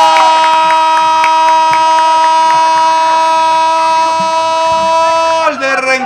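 A football commentator's long goal call: one shouted "gol" held on a single steady pitch, breaking off with a drop in pitch about five and a half seconds in.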